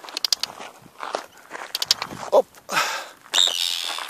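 Arctic tern making alarm calls as it dives at an intruder near its nest: quick rattling series of clicks in the first half, then two louder harsh cries in the second half.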